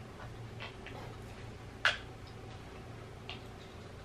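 A few faint crisp clicks of a potato chip being chewed, with one sharper click a little under two seconds in, over a low room hum.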